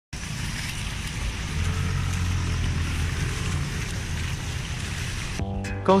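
A low, steady motor drone under a rushing noise. It cuts off abruptly near the end as background music begins.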